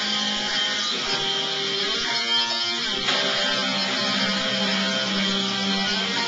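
Rock band at practice playing a song: electric guitar chords ringing over bass guitar at an even loudness, the notes changing every second or so.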